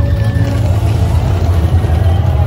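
Loud dance music playing over a sound system, its bass heavy and blurred in the recording, with voices from the crowd underneath.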